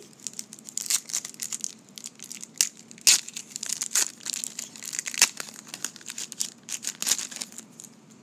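Plastic wrapper of a 1990 Score football card pack crinkling as it is opened by hand: a run of irregular sharp crackles.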